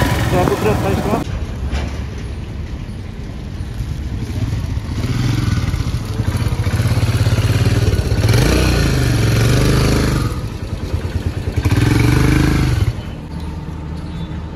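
Royal Enfield Himalayan's single-cylinder engine idling and being revved in three blips of a second or two each, the pitch rising and falling; the last blip ends abruptly near the end.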